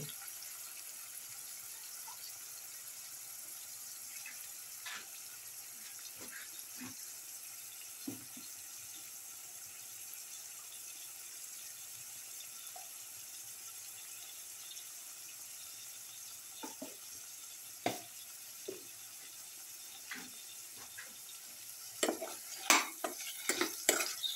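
Cauliflower and spinach purée sizzling steadily in hot oil in a steel pan, with an occasional tap of a steel spatula. About two seconds before the end, stirring starts: a run of sharp scrapes and clicks of the spatula against the pan.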